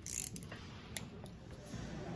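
Inch-pound torque wrench working on cylinder head bolts during the first torque pass: a few faint sharp clicks, the loudest right at the start.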